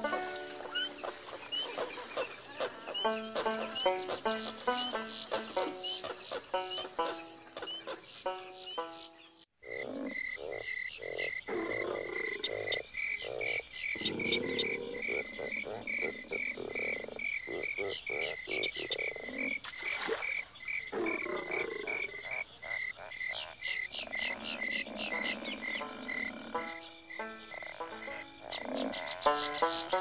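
Bayou ride ambience. A plucked-string tune plays for about the first nine seconds, then breaks off briefly. After that, frogs croak over a fast, even, high chirping of insects.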